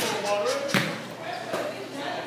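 Basketball knocking against the hoop and bouncing: two sharp knocks, the louder about three-quarters of a second after the first, over steady crowd chatter in a large hall.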